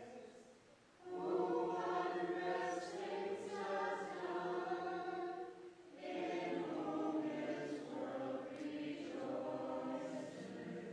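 A congregation singing a hymn together, the closing hymn as the clergy leave at the end of Mass. It comes in long phrases, with a short break about a second in and another near the middle.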